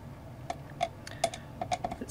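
A screwdriver turning the small centre screw of a plastic projector lens wheel: a series of light, irregular clicks and ticks as the tip works in the screw head.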